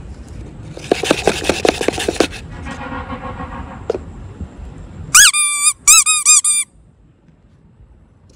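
About a second of rapid crackling clicks, then about five seconds in a loud run of squeaky pitched notes: one swooping note followed by three short ones.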